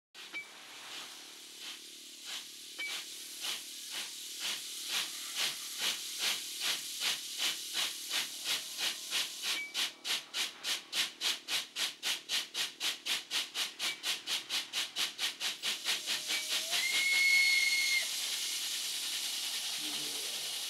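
Steam locomotive pulling away: its exhaust chuffs quicken steadily from under two a second to about three a second over a constant hiss of steam. Near the end the whistle sounds one held blast of just over a second, the loudest moment, and then the beats give way to a steady rushing hiss.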